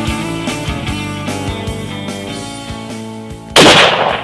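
Guitar background music fading, then about three and a half seconds in a single loud rifle shot with a long echoing roll.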